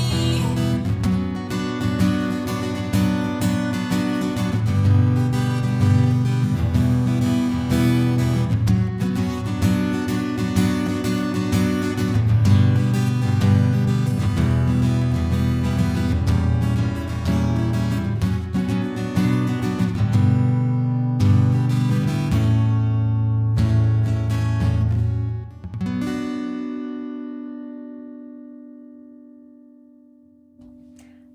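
Instrumental close of a song on guitar: strummed chords with a steady beat, thinning to held chords, then a final chord that rings out and fades away near the end.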